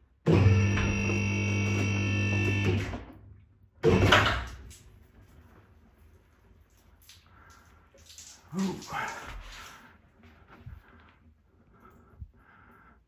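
An electric car lift's motor runs for about two and a half seconds as a loud, steady, even-pitched hum and then stops. About a second later comes a single loud clunk that dies away quickly.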